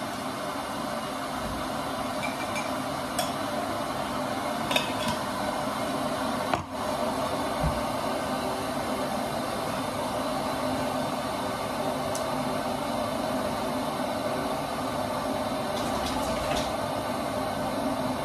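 Steady rushing noise from a running household appliance, with a few faint clicks and taps and a brief drop about six and a half seconds in.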